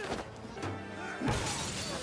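Tense orchestral film score from a TV action scene, with a sudden shattering crash, as of breaking glass, about a second and a quarter in.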